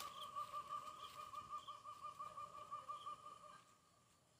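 An animal's steady warbling call, one held pitch that wavers about six times a second, stopping shortly before the end.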